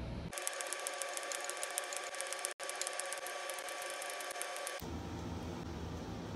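TIG welding arc on thin steel, a steady buzz with a fast, even crackle, starting abruptly about a third of a second in and cutting off abruptly near the end, with a momentary break about halfway through.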